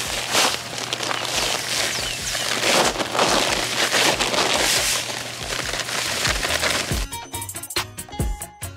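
Dry all-purpose sand pouring out of a paper sack onto a pile, a steady hiss with fine crackling and the sack rustling, under background music with a steady beat. The pouring stops about seven seconds in and the music is left alone.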